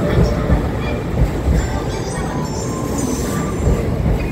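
E259 series electric train rolling slowly into a station, its wheels clacking over rail joints in a series of thumps over a steady low rumble.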